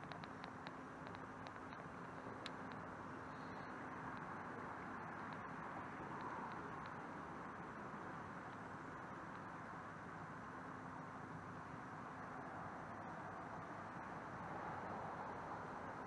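Faint, steady rush of water along a paddled canoe's hull, swelling and easing with the strokes, with a few faint ticks in the first couple of seconds.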